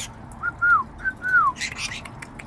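A clear whistle, given twice as a two-note phrase: a short note and then a longer one that falls in pitch.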